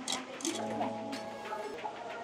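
A few clicks, then a melody starting about half a second in, from a coin-operated fortune-teller machine that has just been paid to run.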